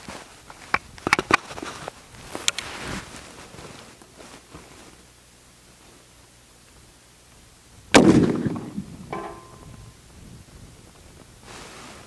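A single rifle shot from a Springfield Trapdoor Model 1884 in .45-70, fired about eight seconds in, with a sharp crack and a tail that dies away over the next second or so.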